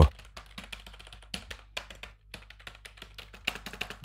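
Typing on a computer keyboard: quick, irregular keystrokes, with a brief pause about two seconds in.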